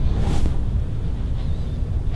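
Low, steady rumble of handling and air noise on a handheld video camera's microphone as it is carried and panned, with a brief hiss about a third of a second in.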